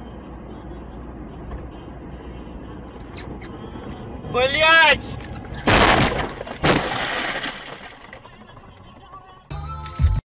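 A car collision heard from inside the car. Steady cabin road noise gives way to a short wavering pitched sound, then a loud impact about six seconds in and a second hit just after. A crunching, shattering tail follows as the windshield cracks.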